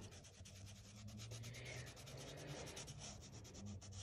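Black Sharpie marker scribbling on paper, faint and rapid, with many quick short strokes as a small circle is filled in solid black.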